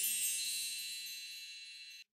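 The tail of a kirtan track dying away: high chime-like ringing tones fade steadily out, ending in silence as the track finishes.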